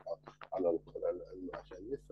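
A person speaking in a continuous stream of syllables, over a steady low hum.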